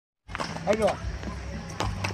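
A horse's hooves thudding a few times as it walks on packed dirt, with a brief vocal sound just under a second in.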